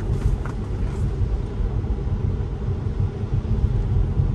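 Steady road rumble heard inside a moving Tesla's cabin: the tyres running on a wet road, with no engine note from the electric drive.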